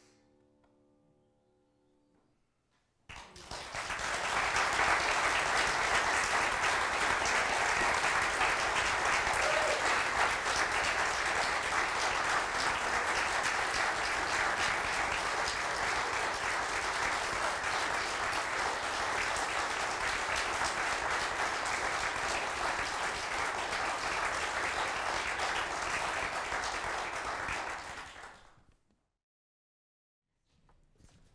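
The last faint held notes of a violin with piano die away, then about three seconds in an audience starts applauding. The applause runs steadily for some 25 seconds and cuts off suddenly near the end.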